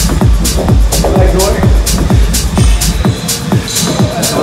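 Electronic dance music with a steady kick-drum beat and hi-hats; the deep bass drops out about three seconds in.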